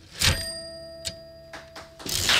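A manual typewriter's bell struck once, ringing on and slowly fading, with two light mechanical clicks from the machine after it; the typewriter is being played as a percussion instrument.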